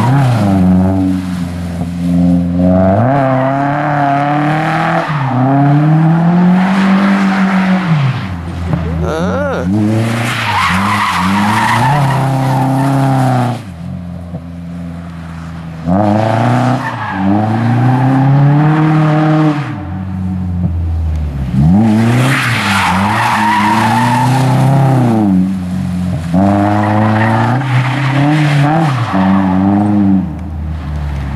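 Nissan S13 drift cars' engines revving hard, the pitch climbing and falling again and again, over the hiss and squeal of sliding tyres. The noise comes in three long runs, broken by a drop in level about 13 seconds in and a shorter one around 20 seconds.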